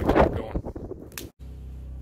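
Wind buffeting a phone microphone. After a sudden break about a second and a half in, a steady low hum follows, from a small inverter generator running.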